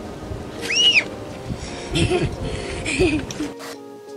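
A recorded animal call: one high squeal that rises and falls about a second in, followed by softer, lower calls around two and three seconds in, with faint music underneath. It is shrill and child-like, like a toddler screaming in excitement.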